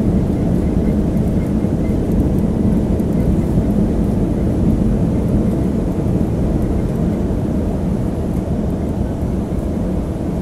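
Steady, low-pitched cabin noise of an airliner climbing after take-off: engines and rushing air heard from inside the cabin.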